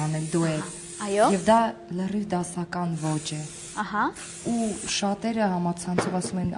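Two short hisses of an aerosol spray, each about a second long, one near the start and one about four seconds in, heard under talking voices: hairspray being applied to a hairstyle.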